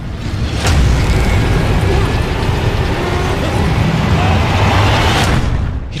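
Loud cinematic movie-trailer sound design: a dense rumbling wash with a heavy low end. It opens with a sharp hit under a second in and stops with another just before the end.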